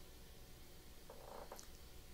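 Near silence: room tone with a low steady hum and one faint, brief soft sound a little after a second in.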